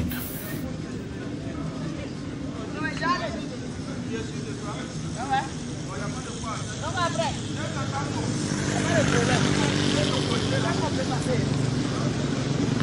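Street traffic ambience: motor scooters running and passing along the road over a steady engine hum, with a passing engine growing louder about eight seconds in. People's voices can be heard in the background.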